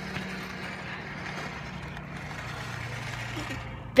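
Small battery-powered RC rock crawler driving across asphalt, its motor and gears whirring faintly over a steady low hum that drops in pitch about halfway through.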